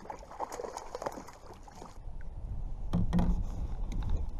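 Water splashing and lapping around a kayak as a hooked striped bass is brought in at the side, with short knocks from the boat. About three seconds in, a louder low rumble comes onto the microphone.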